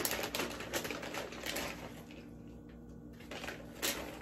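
Plastic zip-top bag crinkling and rustling as shredded cheddar cheese is shaken out of it into a mixing bowl, in quick rustles that die down about two seconds in, with one more rustle near the end.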